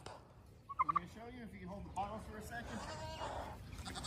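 A domestic tom turkey gobbling faintly, beginning about a second in.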